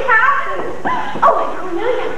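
High-pitched voices calling out in short exclamations with sliding pitch.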